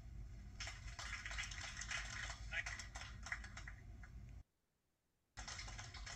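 Low-quality, hum-laden soundtrack of an old camcorder recording of a ceremony: indistinct speech with dense clattering, clicking noise. The sound cuts off dead about four seconds in, returns for about a second, then stops again as playback is paused.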